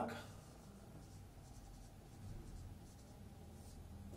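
Faint strokes of a marker pen writing a word on a whiteboard, over a low steady room hum.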